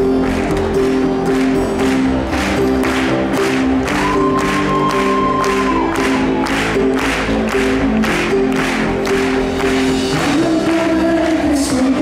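A live folk band playing an intro with sustained keyboard chords over a steady beat of about two strokes a second, with a held high note a third of the way in and voices from the band and crowd.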